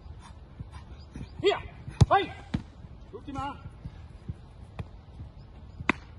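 Sharp thuds of a football being struck, the loudest about two seconds in, with a few lighter knocks later, amid short voiced calls.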